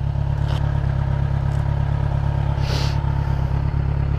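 Kawasaki Z900's inline-four engine idling steadily while the motorcycle stands parked, with a short hiss about three seconds in.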